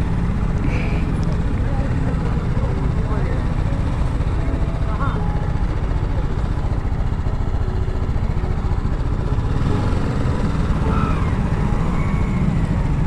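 Sport motorcycle engine idling steadily close to the microphone, with faint voices of a crowd of bystanders in the background.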